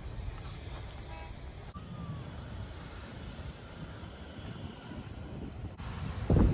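Steady outdoor background noise: a low rumble with hiss, with a few faint short tones about a second in.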